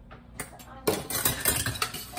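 Kitchen dishes and utensils clattering: a quick run of clinks and knocks starting about a second in, after a single click just before.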